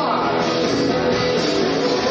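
Live rock band playing, with electric guitars and drums, a note sliding down near the start.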